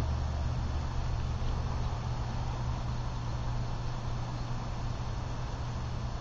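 Steady low rumble and hiss from a wood-pellet-fuelled wood-gas camp stove burning under a pot of water just short of the boil, with breeze buffeting the microphone.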